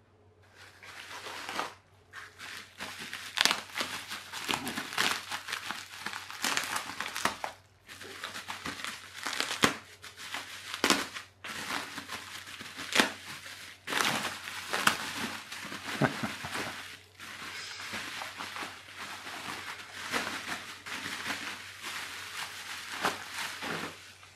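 Plastic bubble wrap crinkling and rustling as it is handled and pulled off a toy car, with many sharp crackles throughout.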